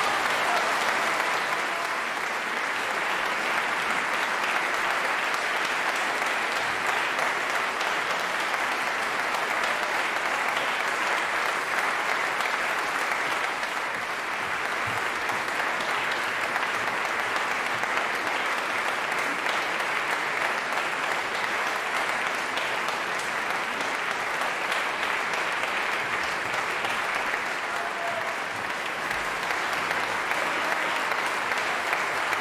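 Large concert audience applauding, a steady, unbroken sound of many hands clapping.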